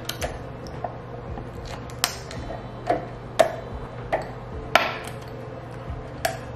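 Silicone stretch lid being pulled taut over a glass bowl: a scattering of short clicks and taps as the silicone and fingers knock against the glass, about seven in all.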